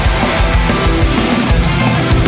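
A metalcore band playing loud and live, with distorted electric guitars, bass and a drum kit, and a quick cluster of drum hits near the end.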